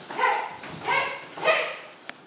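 Three short, sharp shouts about two-thirds of a second apart: kiai-style calls during karate punching drills.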